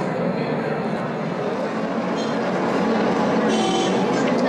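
Many people talking at once, a steady crowd chatter with no single voice standing out. A brief high ringing tone comes in near the end.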